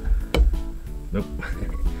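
Background music with a steady tune, and a single sharp click about a third of a second in as locking forceps are clamped at the spring of a wooden mannequin's leg.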